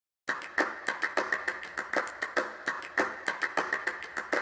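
A fast, slightly uneven run of sharp percussive hits, about five a second, starting a moment in: the rhythmic percussion opening of the soundtrack music.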